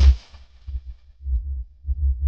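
Deep sub-bass pulses of a 'vibration' bass-competition DJ remix, coming in uneven throbs with almost nothing above them. The tail of a brighter sweep fades out in the first half-second.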